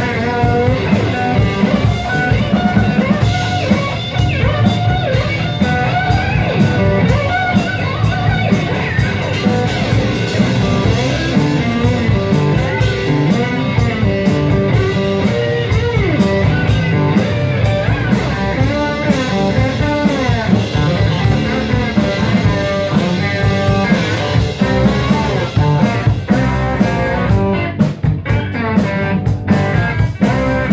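Live blues band playing an instrumental passage: electric guitar with gliding, bending notes over strummed acoustic guitar, electric bass and a drum kit, in a slow, swampy Mississippi-blues style.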